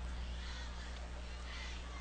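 Steady low electrical hum, with faint distant shouts from the stadium heard about half a second in and again near the end.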